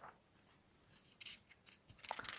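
Faint rustling of paper pages of a comic album being handled, a few short soft rustles, most of them in the second half.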